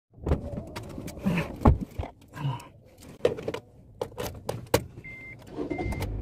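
A string of sharp clicks and knocks from inside a Honda Mobilio's cabin as someone handles the door and controls, with two brief whirring swells early on. A short high beep sounds twice near the end.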